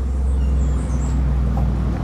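A low, steady rumble, a little louder in the middle.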